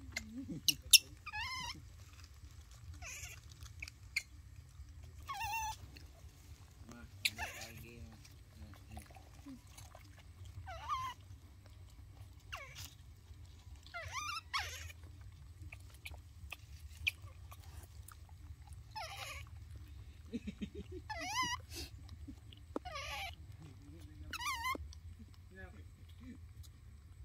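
Baby macaques calling: short, high, wavering squeals repeated every few seconds, over a steady low hum, with a couple of sharp clicks about a second in.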